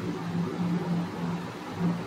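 A steady low hum over an even hiss, with no speech.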